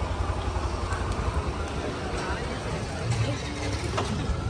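Street ambience: a steady low rumble with indistinct voices in the background.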